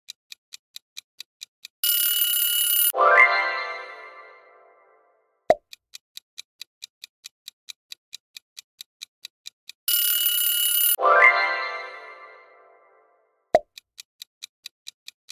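Quiz-game sound effects: a fast ticking countdown clock stops, and a loud ringing alarm buzzer sounds for about a second and cuts off sharply. A bright chime follows and rings out, fading over about two seconds, then a short pop, signalling the answer reveal. After a few silent seconds the buzzer, chime and pop come again, and the ticking starts once more at the end.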